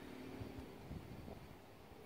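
Quiet outdoor background: a faint low rumble and hiss with no distinct event.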